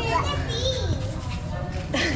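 Children's voices, high and rising and falling, over general crowd chatter, with a steady low hum underneath.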